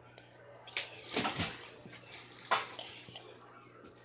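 Reef aquarium running: water splashing and trickling over a steady low pump hum, with a few sharp rustles and knocks, the loudest about two and a half seconds in.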